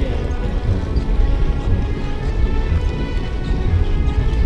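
Wind buffeting and rumbling on the microphone of a handlebar-mounted action camera on a moving road bike, under background music.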